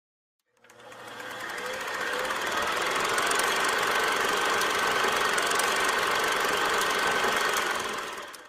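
Film projector running: a steady rapid mechanical clatter that fades in over the first two seconds and starts fading out near the end.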